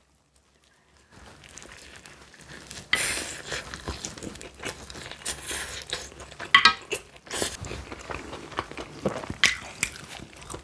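Close-miked biting and chewing of sauce-glazed fried chicken, starting about a second in, with several loud crunches of the crisp batter among softer wet chewing.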